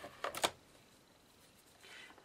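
Adhesive tape runner pressed and drawn along card: a short burst of clicking and rasping near the start.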